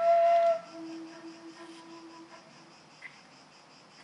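End-blown flute holding a high note that stops about half a second in. A softer, lower note follows and fades out after about two seconds. After that only a faint, steady high-pitched buzz remains.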